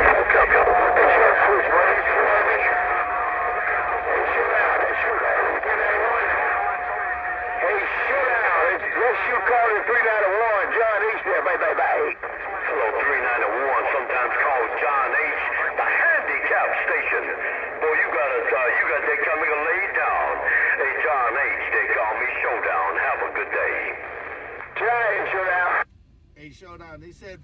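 Another station's transmission coming through the speaker of a Cobra 148 GTL CB radio: a voice with a thin, narrow radio sound that cannot be made out, with a steady whistle over it for the first several seconds. The transmission cuts off at the end.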